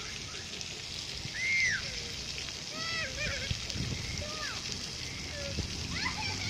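Splash-pad water jets spraying and spattering onto wet pavement, a steady hiss, with children's short high-pitched calls and squeals now and then.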